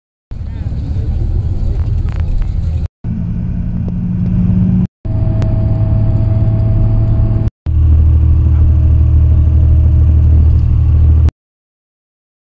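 Low rumble of a moving road vehicle heard from inside the cabin, in four short clips that each cut off abruptly, with voices in the first clip.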